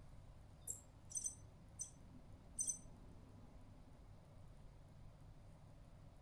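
EMO desktop robot giving four short, high-pitched squeaky chirps in quick succession within the first three seconds, its response to the "update home station" voice command.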